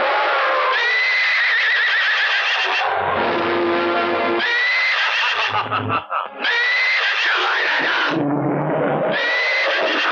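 A horse whinnying four times, each call a second or two long with a quavering pitch that rises and then falls. Background music plays between the calls.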